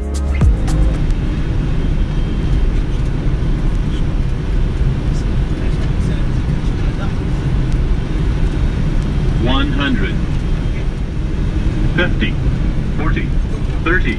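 Steady low rumble of airflow and engines in a Boeing 777 freighter's cockpit on short final. From about ten seconds in, the automated radio-altimeter callouts begin counting down the height above the runway, a few seconds before touchdown.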